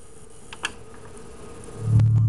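A faint steady buzzing hum from the home stereo, with a couple of clicks about half a second in. Near the end, the song starts on the Sony speakers with a deep bass note that swells up loud.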